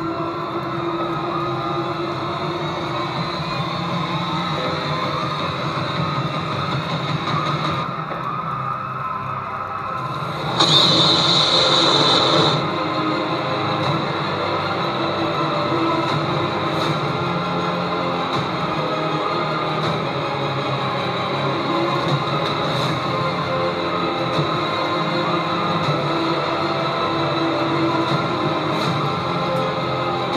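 Background music with a dense, sustained texture and no clear beat. A louder burst of about two seconds comes about ten seconds in.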